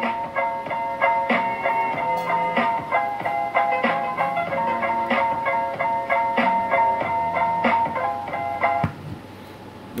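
The fifth background-music track from a CB radio sound-effects box: a short, jingle-like melody of quick repeated notes that stops about a second before the end.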